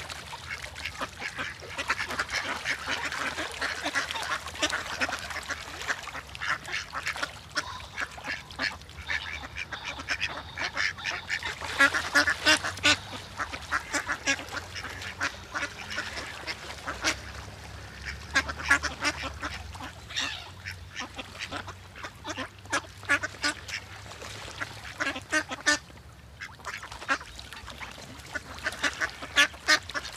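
Ducks quacking in bouts of short, repeated calls, loudest about twelve seconds in.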